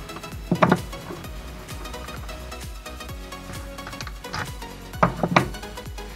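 Crinkly metallic rustling of a stainless-steel scouring pad being torn apart by hand, over background music. There are two brief louder sounds, about half a second in and about five seconds in.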